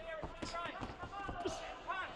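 Sharp thuds of boxers' gloves and feet on the ring canvas during an exchange, a few separate strikes, under voices calling out.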